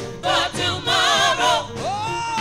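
Gospel choir singing together through microphones, several voices with wavering pitch in loud phrases, ending on a note that slides up and is held.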